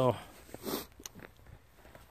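A man's voice trailing off at the start, then faint rustling and a few small clicks, consistent with the phone being handled while he pauses.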